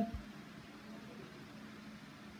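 Quiet room tone: a faint steady hiss with a faint low hum, no distinct sound event.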